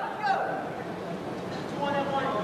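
People's voices calling out in a gym, loudest at the start and again near the end with a lull between.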